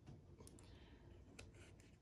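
Near silence with three or four faint clicks of a laminated paper card being handled.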